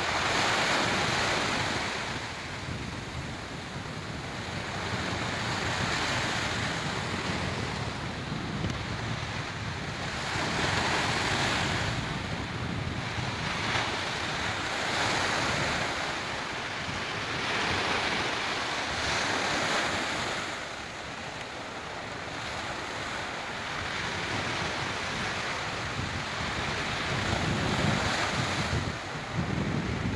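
Ocean surf breaking on a sandy beach: a rushing hiss that swells and fades as each wave comes in, every few seconds. Wind buffets the microphone, in low rumbling gusts near the end.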